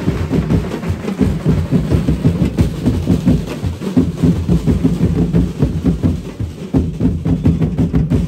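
Festival street-dance drum and percussion ensemble playing a fast, unbroken rhythm of rapid strokes, heavy on the deep drums.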